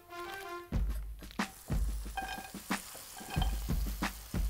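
Background music at first, then from under a second in a series of knocks and thuds as bread cubes are pushed off a wooden board into a frying pan and the pan is handled, with a light sizzle of oil.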